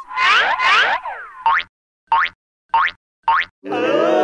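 Cartoon sound effects: two quick swooping glides in the first second, then four short upward-sliding chirps about two-thirds of a second apart with silence between them.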